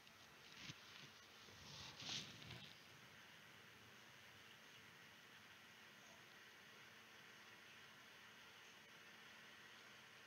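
Near silence: faint room tone, with a couple of soft, brief noises in the first three seconds.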